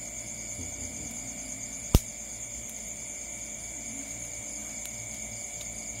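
Night-time chorus of crickets: a steady, high-pitched trilling at two pitches that holds unchanged. A single sharp click stands out about two seconds in.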